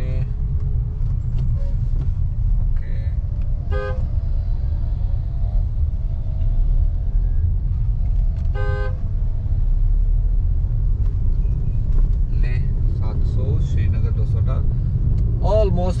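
Steady low road and engine rumble inside a moving car's cabin, with two short vehicle horn toots about 4 and 9 seconds in.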